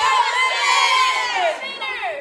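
A group of girls yelling and cheering together in one long, high-pitched shout that falls in pitch and fades about one and a half seconds in.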